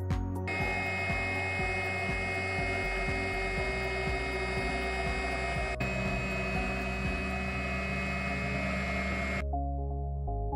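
CNC router spindle running with a steady high whine as it mills the tabletop, under background music; the whine cuts off abruptly near the end.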